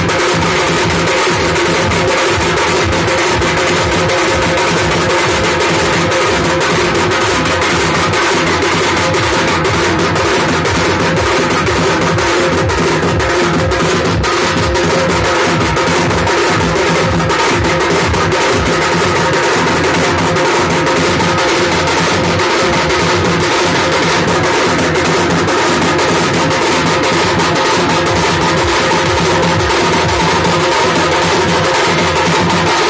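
Muharram drumming (a Moharmi dhun): fast, continuous stick strokes on snare-type side drums over a large rope-laced barrel drum (dhol) beaten with sticks. It is played loud, without a break.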